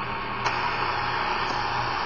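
Eton 550 shortwave radio hissing with steady static on 25 MHz over a low hum, with a click about half a second in. The WWV second ticks are no longer heard, only noise: on its internal telescopic antenna the radio picks up interference, which the owner puts down to the monitor, lights, webcam and computers in the room.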